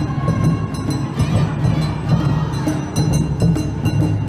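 Live Japanese festival music for an Awa Odori dance: taiko drums with clanging percussion strikes, keeping a steady beat.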